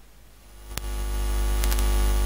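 Electrical hum and static in the recording, faint at first, then swelling from about half a second in and growing steadily louder, with a click just before one second in.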